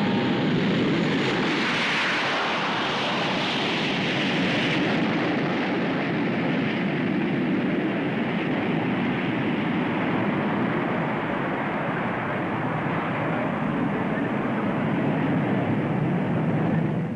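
Several Hawker Sea Hawk jet fighters' Rolls-Royce Nene turbojets running at high power as the formation moves off: a steady, loud jet noise with a sharper hiss for the first few seconds that then eases.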